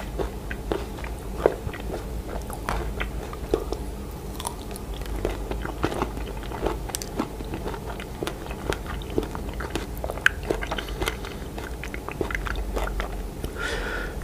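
Close-miked chewing of a bite of a blue chocolate-coated strawberry, with irregular sharp mouth clicks throughout. Near the end a hiss begins as whipped cream is sprayed from an aerosol can.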